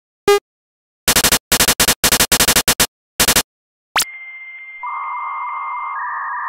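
Synthesized retro home-computer boot and loading sound effects: a short beep, then clusters of buzzy electronic chirps. About four seconds in, a quick rising sweep leads into a steady high loading tone, and a second, lower tone joins it about a second later.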